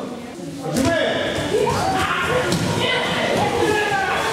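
A group of children starting a judo partner drill on tatami mats: feet thudding and slapping on the mats and jackets rustling, with several children's voices talking over it from about a second in.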